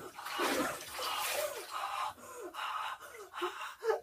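A person's sharp, nervous breaths and gasps with several short falling cries, bracing before stepping into ice-cold bathwater.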